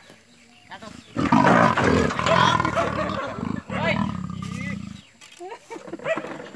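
A tiger roaring: a loud, rough sound that starts about a second in and lasts about four seconds, with people's voices over it.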